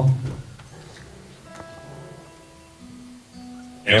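Acoustic guitar being tuned: single strings plucked one at a time and left to ring, a higher note about a second and a half in and a lower one near three seconds.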